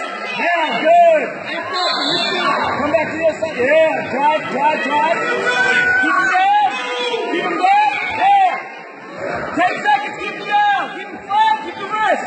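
Many overlapping voices of spectators talking and calling out across a gymnasium during a youth wrestling match.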